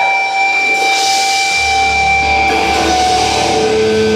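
Heavy metal band playing live: electric guitars hold long, steady high notes over cymbal wash, and a low bass note comes in about halfway through.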